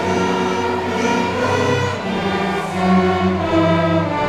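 Student string orchestra of violins, cellos and double bass playing a slow piece with sustained notes, with voices singing along.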